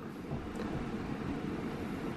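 A low, steady rumble of background noise with no distinct events.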